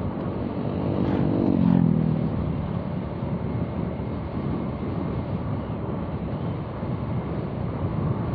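Steady engine, wind and road noise from a motorcycle on the move. Between one and two seconds in, an oncoming motorcycle passes, its engine note dropping in pitch as it goes by.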